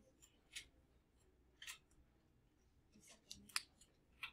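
A pink felt-tip highlighter drawn across a sheet of paper: a few faint, short scratching strokes, most of them in the last second.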